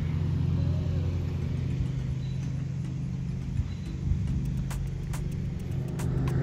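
Steady low engine rumble of a vehicle heard from inside its cabin, with a few faint ticks in the second half.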